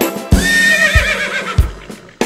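A horse whinnying once, a shaky call that falls in pitch over about a second. It sits over background music with a steady beat.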